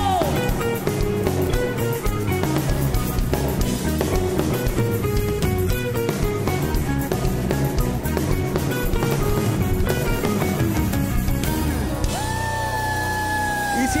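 Live worship band playing an instrumental passage of a Christmas song, with electric guitar over drums and a melody stepping from note to note. A long held note comes in about two seconds before the end.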